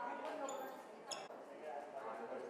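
Indistinct voices talking over one another, with a single sharp click about a second in.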